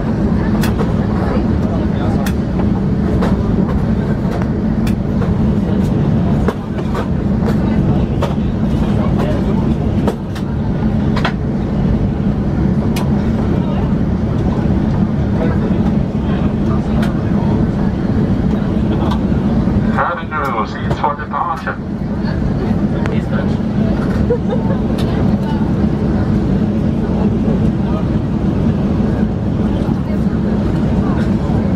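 Cabin noise of a Boeing 737-800 taxiing: a steady hum from its CFM56 jet engines at taxi power, with frequent small clicks and rattles from the cabin as the wheels roll over the taxiway. About twenty seconds in, the hum briefly thins and some wavering higher sounds come through.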